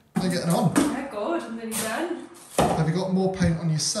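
A paint roller being worked hard against a wall in the next room, heard under talking.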